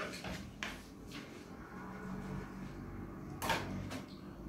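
Paper and book handling: a few short rustles and light knocks from a book and a sheet of paper, the loudest about three and a half seconds in, over a faint low hum.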